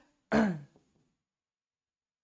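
A man clearing his throat once, a short burst that drops in pitch.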